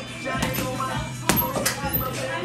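Gym background music playing, with about four sharp thuds at uneven spacing from boxing-gloved punches landing on a heavy punching bag, the loudest a little past the middle.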